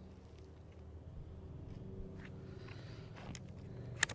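Faint, steady low mechanical hum, with a couple of soft clicks in the second half as the rifle and scope are handled.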